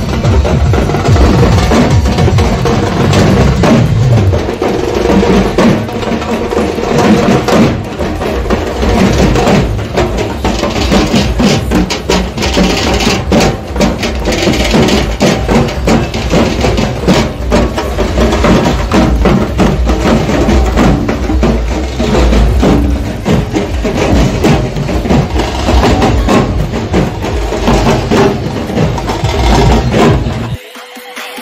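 A group of dhol barrel drums and a small snare drum beaten with sticks in a fast, loud, continuous rhythm.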